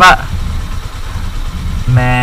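Motorcycle engines idling as a low steady rumble, opened by a brief loud burst, with a man's voice starting a long held call near the end.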